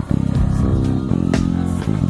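A five-string deOliveira Dream KF jazz-style electric bass played through an amp, with a line of low notes changing several times a second.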